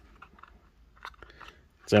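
A few faint clicks of a small plastic record-shaped candy container being handled and twisted open. A voice starts right at the end.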